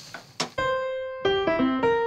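A single sharp knock, like a wooden spoon against a frying pan, then electric piano music starts about half a second in: a few held notes, with more notes joining later.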